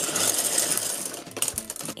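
A plastic LEGO parts bag being handled and opened: the plastic crinkles while the loose bricks inside clatter in a quick, dense rattle, with a few sharper clicks about one and a half seconds in.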